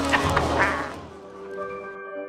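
A few sudden knocks and a short nasal cry in a struggle, then gentle mallet-instrument music with ringing tones starts about a second and a half in.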